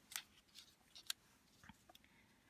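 Faint scattered taps and rustles of small paper squares being set down and slid into place on a cardstock card, about five soft ticks over two seconds.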